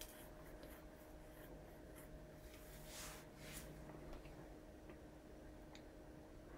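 Near silence: faint rubbing and rustling as quilted fabric and binding are handled and pressed with a small iron, with a few soft swishes around three seconds in. A faint steady hum runs underneath.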